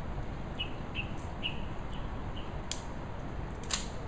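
A small bird chirping: five short, quick notes in the first half, over a steady low background rumble. Then two sharp clicks, one about three seconds in and a louder one near the end.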